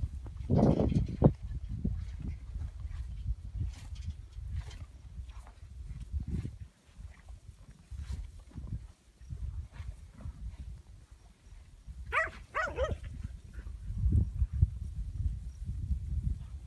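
Two short animal calls, one about half a second in and one about twelve seconds in, over a steady low rumble, from yearling cattle being gathered by a cowdog.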